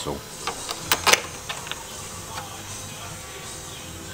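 A few sharp metallic clicks and knocks in the first second and a half, the loudest about a second in, as the metal parts of an Akrapovic exhaust are handled and fitted to their hanger bracket, then a steady low hum.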